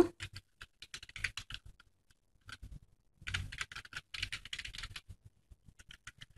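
Typing on a computer keyboard: irregular runs of keystrokes, a pause about two seconds in, then a fast dense run before it thins out near the end.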